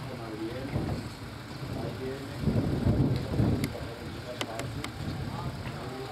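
People talking in the background, with a loud low rumble starting about two and a half seconds in and lasting about a second, then a few sharp ticks.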